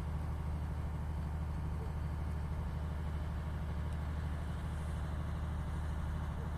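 A steady low engine hum, like a vehicle engine idling, unchanging throughout.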